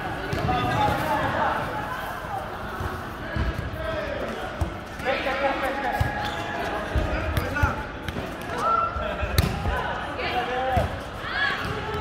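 A volleyball is struck and bounces at a recreational game, giving several sharp hits at irregular intervals over a steady background of players' and bystanders' voices.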